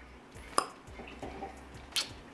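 Light clicks of a small hard object being handled: one sharp click about half a second in and another near the end, with a brief soft murmur between.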